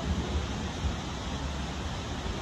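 Wind buffeting the microphone: a steady rushing noise with uneven low rumble.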